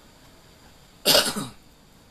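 A person coughing once, a loud, abrupt cough about a second in that lasts under half a second, over quiet room tone.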